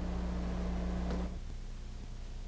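Low steady electrical hum with faint hiss on an old recording. The hum drops away a little past halfway, leaving weaker hum and hiss.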